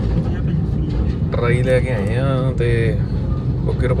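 Steady low road-and-engine rumble inside the cabin of a moving Suzuki Swift, with a voice talking over it in the middle.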